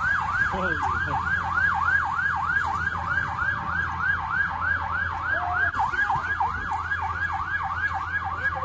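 A vehicle siren in fast yelp mode, sweeping up and down about three times a second over a steady low hum.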